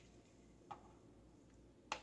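Near silence with two light clicks a little over a second apart, the second louder, as a tint brush knocks against a plastic hair-bleach mixing bowl.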